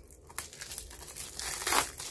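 Plastic packaging crinkling and rustling as it is handled. There is a small click about half a second in, and the crinkling builds to its loudest near the end.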